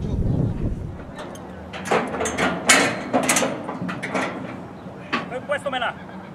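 Short shouts and sharp metallic bangs around a steel horse-racing starting gate while horses are held in the stalls, coming in a quick string from about two seconds in.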